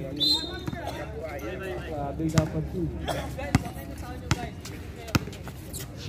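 A basketball being dribbled on an outdoor concrete court: a few sharp single bounces about a second apart in the second half. Players' voices call in the background.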